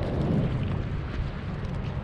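Wind buffeting an action camera's microphone in a steady low rumble, over the wash of sea water around a kayak's hull.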